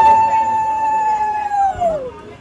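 Conch shell (shankha) blown in one long, steady note that sags in pitch and dies away near the end.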